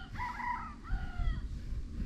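A rooster crowing once: a single call lasting a little over a second, stepping in pitch and then falling away at the end.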